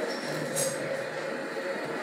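Steady rushing noise with a faint low hum, the audio of a temple video clip played through a television's speaker and picked up by a room microphone, with a brief hiss about half a second in. The speaker presents it as the sound of still-active ancient energy technology.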